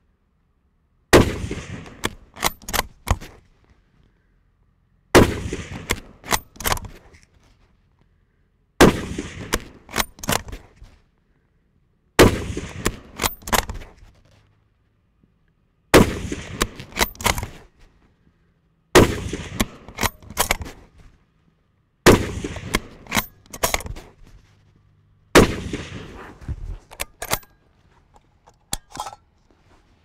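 Ruger Gunsite Scout bolt-action rifle in .308 Winchester fired eight times, a shot every three to four seconds. Each shot is followed by a quick run of clicks as the bolt is worked to chamber the next round.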